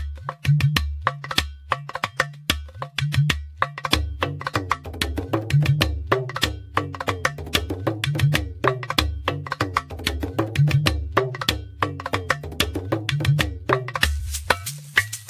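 Background music: a percussion-led track with clicking hits over a repeating bass line and a steady beat.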